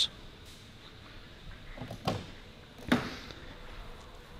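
Car rear door being opened: two short clicks a little under a second apart, the second louder, from the handle and latch of a Volvo S60 rear door.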